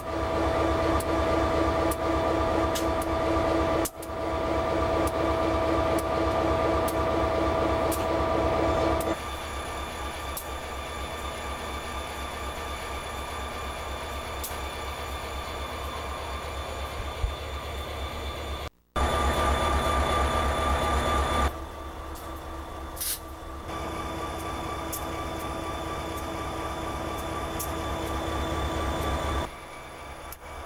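Conrail freight train rolling past, its boxcar wheels on the rails giving steady high squealing tones over a rhythmic low rumble. The sound drops abruptly in level about nine seconds in, is loud again briefly around twenty seconds, then drops once more.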